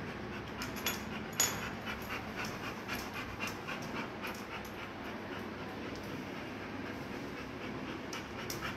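A dog panting quickly, its breaths coming about three a second and fading out about halfway through, with one sharper click about one and a half seconds in.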